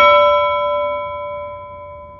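A single struck bell-like chime ringing on and slowly fading away, several clear tones sounding together.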